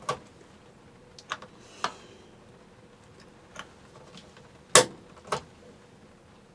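Scattered sharp clicks from the control panel of an RV absorption refrigerator as its buttons are pressed: about seven clicks at uneven intervals, the loudest about three-quarters of the way through.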